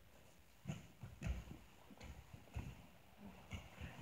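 Faint rustling and a few soft thuds as two grapplers in gis shift their bodies on a foam training mat.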